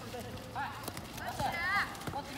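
Boys' voices calling out across a soccer pitch during play, the loudest a wavering drawn-out shout in the second half, with a few sharp knocks of a football being kicked or touched.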